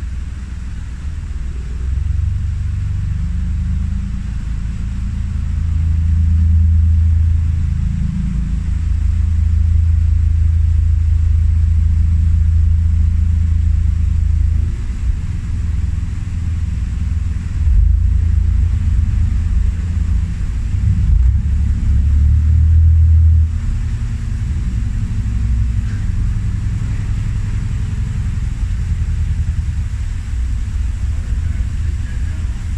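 Narrowboat diesel engine running at low revs, its pitch and loudness stepping up and down several times as the throttle is worked.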